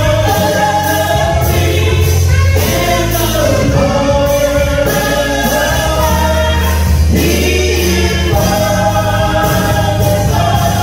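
Gospel vocal group of men and women singing held notes in harmony through microphones, over a bass line and a steady beat.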